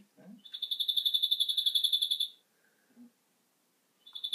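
Recorded bird call played from a tablet's speaker: a high, rapid trill of about ten pulses a second that swells in loudness for under two seconds and then stops, the same call starting again near the end.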